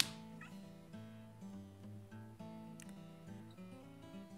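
Soft background music with held notes. A sharp click right at the start, and a faint short meow from a cat about half a second in, the cat asking for water.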